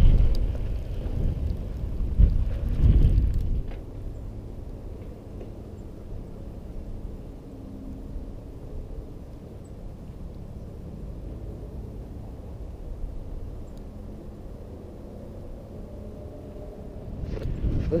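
Low rumble of wind and tyres on a mountain bike's riding camera going over a dirt jump track, loud for about the first three seconds. It then drops to a much quieter, steady outdoor background.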